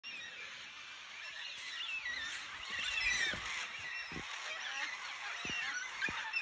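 A chorus of birds calling in the trees: many overlapping chirps and short up-and-down whistles, with a few soft low thumps in between.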